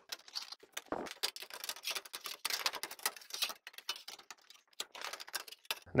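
Galvanized sheet metal being bent by hand along a metal bar to fold in the edge flanges of a duct end cap: an irregular run of small clicks, ticks and light scrapes of metal on metal.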